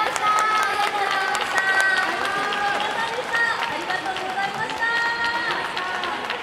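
Several high-pitched young voices calling out together in long held shouts, overlapping at different pitches, with scattered hand claps from the audience.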